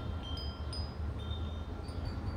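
Chimes ringing lightly: scattered clear high tones sounding one after another, over a low rumble of wind on the microphone.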